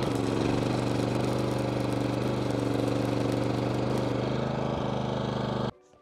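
Stick (arc) welding on a steel bracket on an excavator boom: the electrode's arc buzzes and crackles steadily, then breaks off suddenly shortly before the end.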